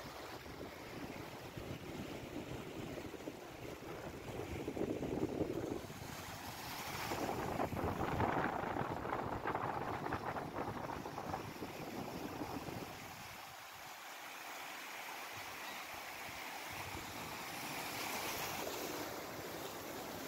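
Small sea waves washing over rocks and sand, with wind on the microphone. The wash swells and ebbs, loudest through the middle.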